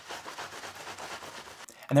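Paper towel rubbing over a wet plastic stencil, a soft, continuous rustling and wiping that stops just before the two-second mark.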